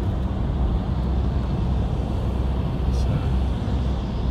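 Steady low road and engine rumble heard from inside a vehicle cruising on a highway.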